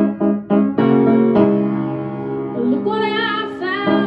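Upright piano played in a run of quick repeated chords, then a held chord, with a woman's singing voice coming in over it in the second half on a wavering, sustained note.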